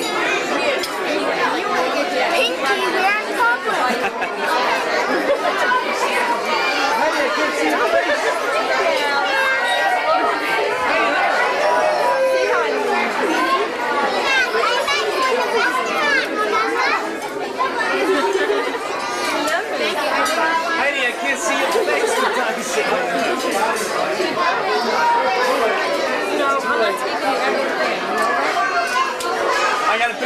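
Many overlapping voices chattering in a busy, crowded dining room, with no one voice standing out, at a steady level throughout.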